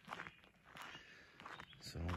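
Faint footsteps on a gravel road, a few irregular steps.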